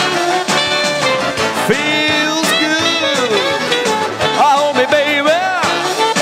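Saxophone solo: melodic phrases with arching pitch bends and scoops over backing music with a steady beat.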